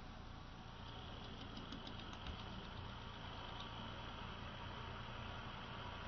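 Homemade axial-flux permanent-magnet motor/generator running at a steady speed with a faint, even hum, its generator coils loaded to charge the battery. A faint high steady whine joins about a second in.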